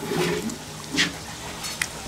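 Soft, wet sounds of rice and fish curry being mixed and squeezed by hand, with a brief hiss about a second in, under faint background voices.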